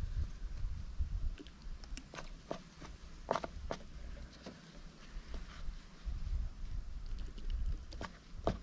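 Gloved hands scrunching a bleach-wet shirt and squirting bleach from a small squeeze bottle: scattered soft clicks and rustles, two sharper ones about midway, over a steady low rumble.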